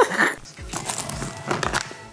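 A voice trails off at the start, then come a few light knocks and rustles of handling and movement.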